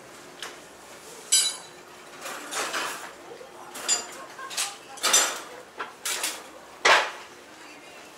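Clattering and clinking of hard objects: a string of about eight sharp knocks at irregular intervals, one with a bright metallic ring about a second in.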